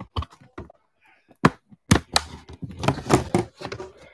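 Irregular clicks, taps and knocks from a laptop being handled and moved, sparse at first and busier in the second half.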